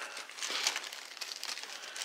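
Clear plastic bag crinkling as it is handled, in a quick, irregular run of small crackles.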